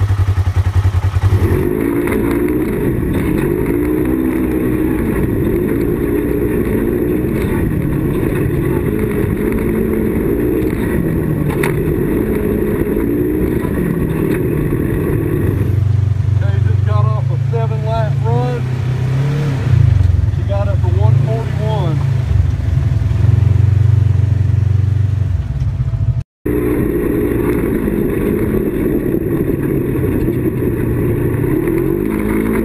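Polaris XP 1000 side-by-side engine and CVT running at varying rpm under way, pitch rising and falling, heard from inside the cab. The sound changes abruptly about a second and a half in and again about halfway through, and drops out for a moment near the end.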